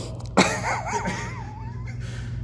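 A sharp click about half a second in, then a high whining cry that wavers up and down in pitch for about a second and a half, over a steady low hum.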